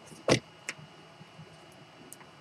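A sharp knock about a third of a second in, then a lighter click, over faint room noise: handling knocks from someone moving things on a desk.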